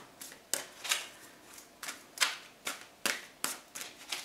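Tarot deck being shuffled by hand: a string of sharp card snaps and slaps, about two or three a second, irregularly spaced.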